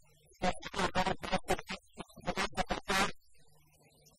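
A man's voice speaking in a lecture over a microphone, in quick stretches broken by short gaps, stopping near the end, when only a faint low hum remains.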